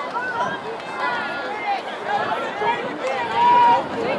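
Many overlapping voices shouting and calling out from players and spectators, with no announcer speaking. About three quarters of the way in, one voice holds a loud, long shout.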